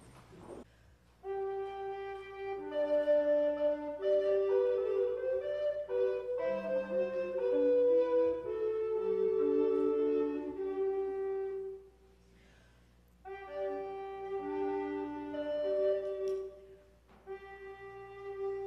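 A trio of recorders of different sizes playing a slow piece in harmony, with several held notes sounding at once. The playing starts about a second in and stops for about a second around two-thirds through, then briefly again near the end.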